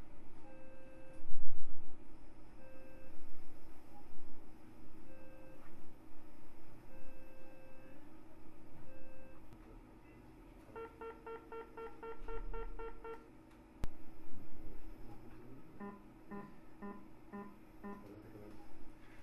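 Electronic tones from an operating-room electrosurgical generator while the hook electrode is used: a short beep about every two seconds, then a quick run of beeps, about four a second, a little over halfway through, and another slower run of lower beeps near the end.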